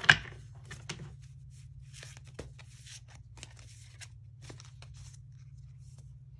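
A deck of tarot cards being shuffled and handled: a sharp tap just at the start, then scattered soft clicks and papery rustles as the cards slide and flick against each other. A low steady hum runs underneath.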